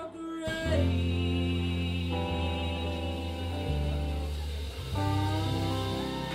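Live rock band playing: sung vocals over acoustic guitar, bass and keyboard, with held chords and a bass line stepping to a new note every second or so. The full band comes in loudly just after the start.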